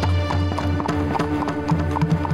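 Horses' hooves clip-clopping at a walk, a steady run of about four hoofbeats a second, over background music with a held low drone.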